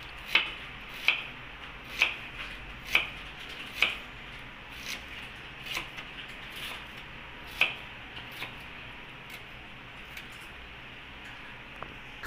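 Kitchen knife slicing an onion on a wooden chopping board: sharp taps of the blade on the board, about one a second, that grow fainter and stop after about eight seconds.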